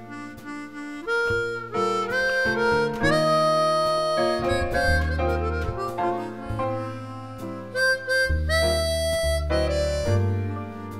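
A harmonica playing a jazz ballad melody in held, sliding notes, accompanied by a jazz trio with deep bass notes underneath.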